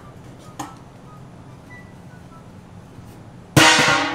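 A faint steady low hum with a few soft clicks. About three and a half seconds in comes a sudden loud drum-and-cymbal crash, a comic music sting, which rings on as it fades.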